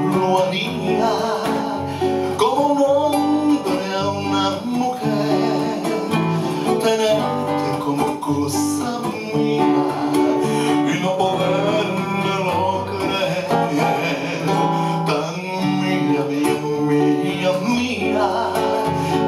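Two nylon-string classical guitars played together in a bolero arrangement, with a man singing over them.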